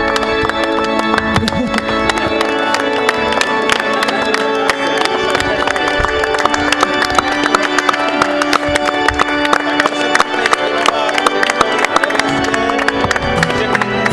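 Organ playing sustained chords while a small group of guests applauds, the clapping thickening from about two seconds in.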